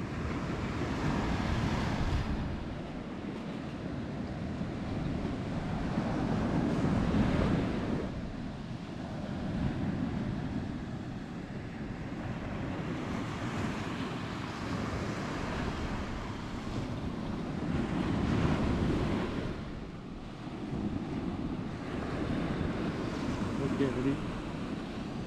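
Sea surf washing on the shore, swelling and fading every few seconds, with wind rumbling on the microphone.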